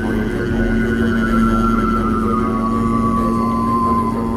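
Didgeridoo droning steadily, with a high whistling overtone that slowly falls in pitch.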